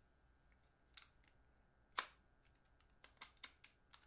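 Sharp plastic clicks and taps from a small camera field monitor being handled and its buttons worked: one click about a second in, the loudest a second later, then a quick run of about five clicks near the end.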